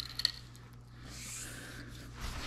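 Two light metal clicks from the reversing knob of a Ridgid ratcheting hand pipe threader as it is pulled out to reverse the ratchet, followed by a soft rustling scrape, over a low steady hum.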